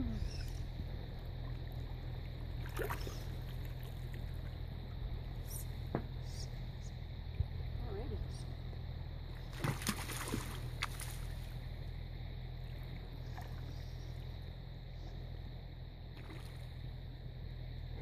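A small mountain creek flowing with a steady low rumble, with a few brief sharp splashes from a hooked rainbow trout fighting at the surface, most of them clustered about ten seconds in.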